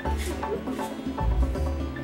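Background music: a low bass line with short higher notes over it.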